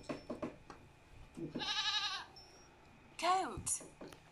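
Goat bleating: a wavering bleat about one and a half seconds in, then a shorter cry that falls in pitch near the end.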